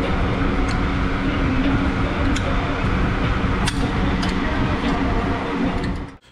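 A few light metallic clicks as a brake caliper's pad retaining spring is worked into its slots by hand, over a steady loud mechanical hum.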